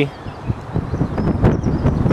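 Wind buffeting the camera microphone, an uneven low rumble almost as loud as speech, with a few faint clicks.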